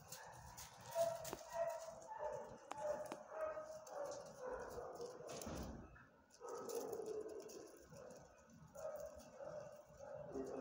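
A dog whining in repeated short, high-pitched cries, with a longer drawn-out whine a little past the middle.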